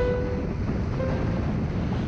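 Steady rushing wind noise on the microphone, strongest in the low end, during a ski run over snow. A few held music notes sound over it, one at the start and a fainter one about a second in.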